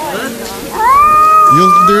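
Cat yowling: one long, drawn-out call that starts a little under a second in, rises and then holds on one pitch.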